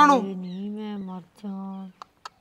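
A woman's long wordless moan of distress in two drawn-out held cries, the second shorter.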